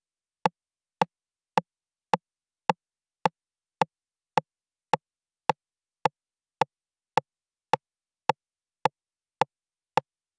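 DIY Eurorack recreation of the Roland TR-909 rimshot voice, triggered at a steady tempo: short, dry, pitched clicks, just under two a second, all alike, with silence between the hits.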